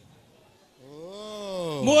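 A man's long drawn-out wail through a microphone, its pitch rising and then falling over about a second, running straight into a spoken word near the end.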